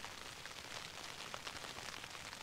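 Light rain pattering on a tent's fabric fly, heard from inside the tent: a faint, even hiss with scattered soft ticks of drops.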